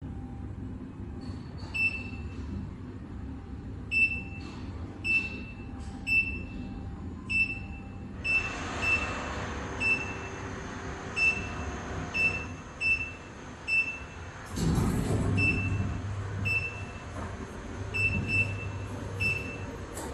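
Touch-screen control panel of a planetary vacuum mixer giving a short high key beep at each finger press as settings are entered: about two dozen beeps, irregularly spaced, some in quick pairs. Underneath is a steady low hum, and about fifteen seconds in a louder rushing rumble lasts a second or two.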